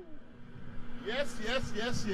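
A man's voice, a few short syllables starting about a second in, over a low steady hum.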